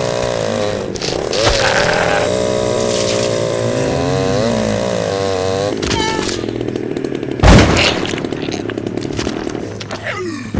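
Chainsaw running and revving, its pitch wavering up and down. About halfway through the sound turns rougher and noisier as the blade bites into something. A loud thud comes about seven and a half seconds in.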